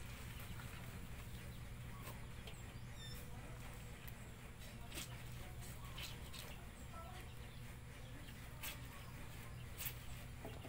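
Clothes being scrubbed and wrung by hand over a metal basin of water: a few faint splashes and drips at scattered moments. A bird chirps briefly in the background.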